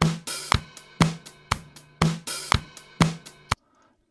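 Multitrack recording of an acoustic drum kit (kick, snare and hi-hat) playing back a steady beat, its hits quantized to the grid with bend markers so that they sound tight. Playback cuts off suddenly near the end.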